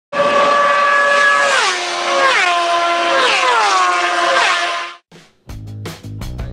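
Intro sound over the opening: a single held pitched tone that slides down in four steps and cuts off abruptly about five seconds in. Then music with bass and guitar starts just before the end.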